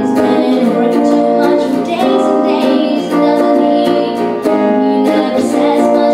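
A woman singing a song while strumming chords on an archtop hollow-body guitar, the strums coming at an even beat under her voice.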